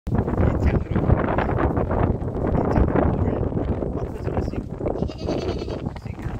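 Goats bleating in a pen, over dense knocking and shuffling noise.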